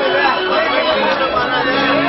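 Several voices talking over one another through a stage PA, with music underneath.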